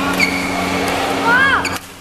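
Court shoes squeaking on a badminton court mat during a fast doubles rally, with a squeal that rises and falls about one and a half seconds in. Sharp racket strikes on the shuttlecock, over a steady low hum.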